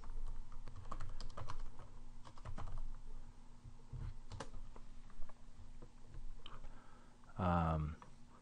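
Typing on a computer keyboard: a run of quick, uneven keystrokes over the first five seconds or so, then a short voiced sound near the end.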